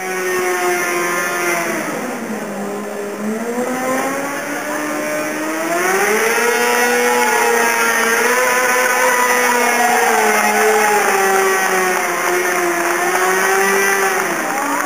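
Sport motorcycle engine revving hard and held at high revs during a burnout, its rear tyre spinning on the asphalt. The revs drop about two seconds in, climb again a few seconds later, and hold high.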